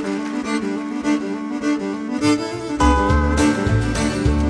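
Live acoustic country-bluegrass band playing: a repeated plucked string figure, joined about three seconds in by bass and a held fiddle line.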